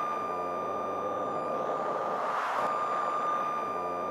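Electronic outro sound effect: a single high steady tone held over a hiss, with a slight swell about two and a half seconds in.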